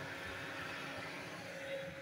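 Steady, faint background noise with a low hum and no distinct events.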